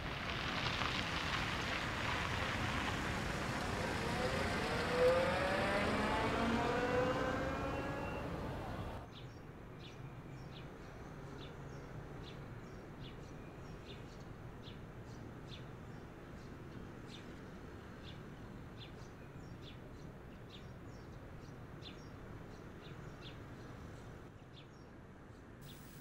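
A car pulls away, its engine rising in pitch as it speeds up. About nine seconds in, the sound drops suddenly to a quiet background with faint, short high ticks or chirps about once or twice a second.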